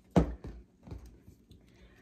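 Knocks from a coiled rubber garden hose being handled on a tabletop as a zip tie is cinched around it: one sharp knock just after the start, then two fainter ones within the next second.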